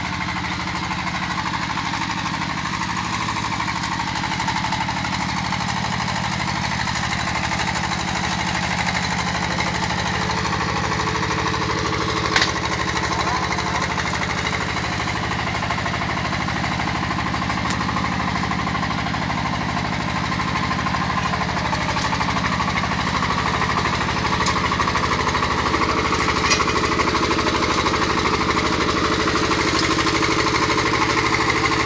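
Korean-made single-cylinder diesel engine of a Cambodian 'tang-tang' farm machine running steadily, getting gradually louder, with a sharp knock about twelve seconds in.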